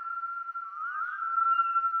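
A steady high whistling tone with quick upward slides about a second in.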